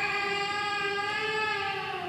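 A high voice holding one long note at a steady level, its pitch wavering slightly.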